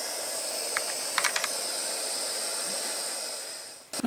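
Hand-held gas torch flame hissing steadily, with a few light clicks about a second in; the hiss fades out near the end.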